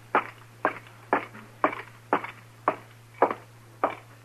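Radio-drama sound effect of a man's footsteps walking at an even pace, about two steps a second, on his way up to a room at the top of the stairs.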